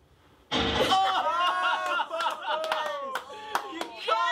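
A near-silent pause, then about half a second in a sudden loud seismic charge explosion sound effect from the show. Several people shout excitedly over it, and there is scattered clapping.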